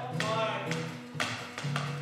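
Acoustic guitar strummed in a steady rhythm, about two strums a second, with a melodica playing held notes over it.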